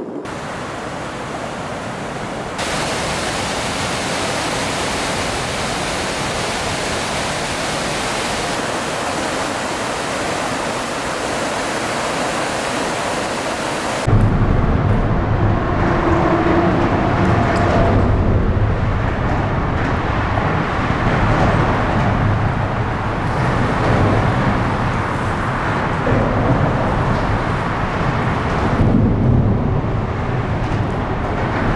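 A steady, even hiss that steps up slightly a couple of seconds in, then cuts abruptly about halfway through to a louder, deep rumble with a rushing edge that carries on to the end.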